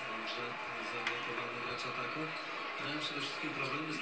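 A man's commentary from a television basketball broadcast playing in the room, with a faint click about a second in.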